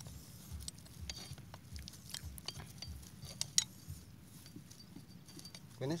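Scattered light metallic clinks and taps of hand tools working on a hand tractor's gearbox housing, with one sharper clink about three and a half seconds in.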